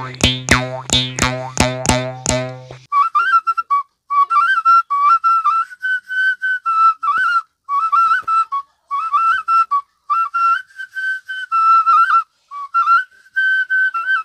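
A bamboo gogona (Assamese jaw harp) twangs in a steady rhythm of about three plucks a second for the first three seconds. Then a xutuli, the small clay whistle of Bihu music, plays a tune in short phrases of high, pure notes that step up and down.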